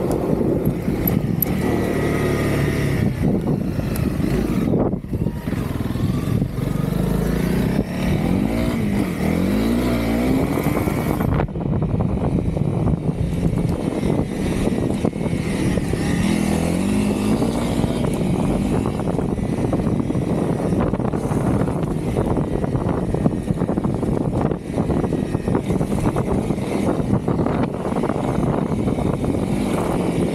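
Honda CRF300L's single-cylinder four-stroke engine running while the bike is ridden, its pitch swinging up and down a few times about a third of the way in and again around the middle as the throttle is worked.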